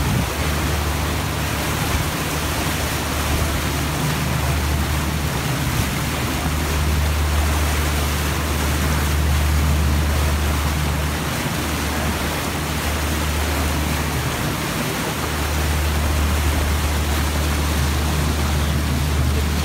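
A river cruise boat's engine running steadily with a low drone, under the rushing of the churned-up wake water behind the stern.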